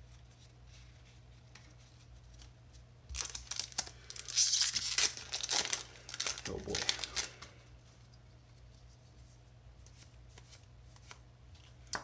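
Foil wrapper of a Magic: The Gathering booster pack torn open and crinkled by hand, starting about three seconds in and lasting about four seconds, followed by quiet handling of the cards.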